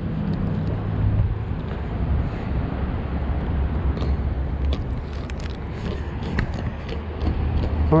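Steady low rumble of nearby road traffic, with a few light clicks and taps in the second half.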